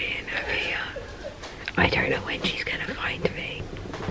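A woman whispering close to the microphone, in short breathy phrases.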